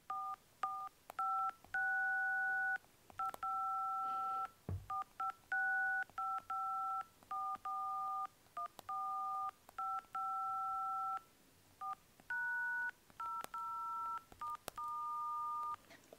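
iPhone dial-pad touch tones (DTMF), one key after another, about thirty presses of varying length picked out as a tune.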